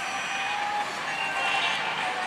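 Steady din of a pachislot hall: the electronic sound effects and music of many slot machines blend into a dense noise, with a few faint held tones showing through.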